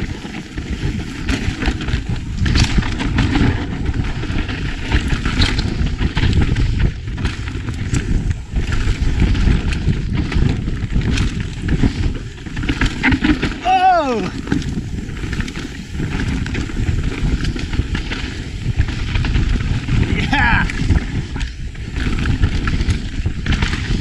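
Mountain bike ridden fast down a dry, loose, dusty dirt trail, heard from a camera on the rider: a continuous rush of wind over the microphone, with tyres scrabbling on the dirt and the bike rattling over rough ground in many short knocks.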